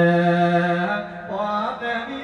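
A man singing Thai lae, a sung Buddhist verse, holds one long note that ends about a second in. After a short pause he sings a brief phrase that rises and falls in pitch.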